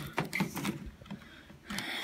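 Handling noise of a camera being set up close to the microphone: a few light knocks and taps, a brief lull, then rustling near the end.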